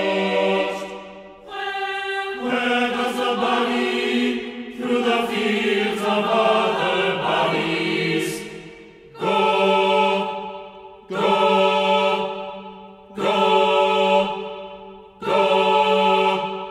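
Chamber choir singing held chords, with sung words. From about nine seconds in come four separate chords about two seconds apart, each starting sharply and dying away.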